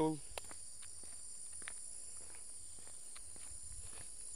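Footsteps on an asphalt road, a soft step about every half second, under a steady high-pitched insect chorus.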